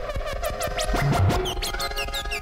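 Improvised electronic music from electric organ, electric piano and synthesizer: a held chord under rapid high chirping blips that fall in pitch, with a few quick rising sweeps about a second in.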